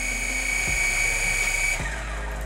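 SG701 toy drone's gear-driven brushed motors spinning the propellers with a steady high whine, like a dental drill. Near the end the whine falls in pitch as the motors wind down.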